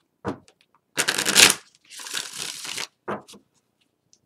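A tarot deck being shuffled by hand: a loud riffle of cards about a second in, followed by a softer rustle of cards for about a second, with a short tap on the table before and after.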